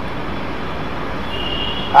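Steady, even background noise during a pause in speech, with a faint high steady tone near the end.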